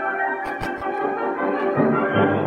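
A symphonic wind band with a euphonium soloist playing a concert work: full sustained brass and woodwind chords, with a few low thuds about half a second in.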